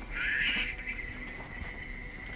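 A high, steady electronic tone: a brief brighter wash in its first half second, then one held pitch that carries on for about two seconds and stops shortly after.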